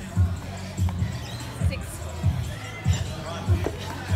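Background music with a steady thudding beat, about one and a half beats a second.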